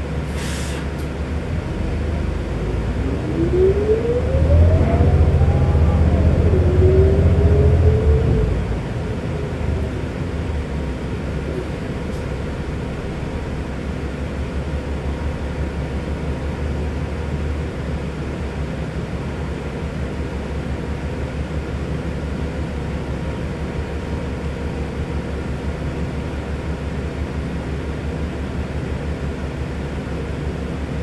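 Inside a New Flyer XD60 articulated city bus under way: a steady low rumble of engine and road. A few seconds in it grows louder, with a whine that rises and then falls away as the bus pulls ahead, before settling back to steady running.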